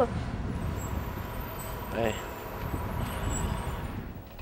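Steady low background rumble, with a single short 'Bye' spoken about two seconds in.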